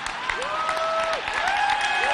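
Large audience applauding, with two long whoops rising over the clapping.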